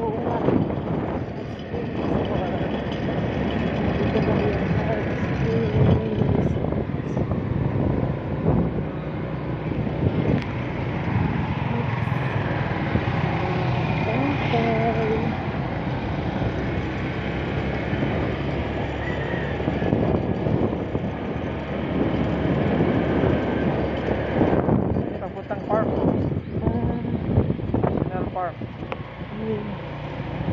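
Steady running noise of a motorcycle being ridden along a road, engine and rushing air together, easing off somewhat near the end as it slows.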